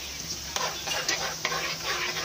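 A ladle stirring and scraping in the metal inner pot of a rice cooker, working through coconut milk with sago pearls. A run of irregular scrapes starts about half a second in, over a low steady hum.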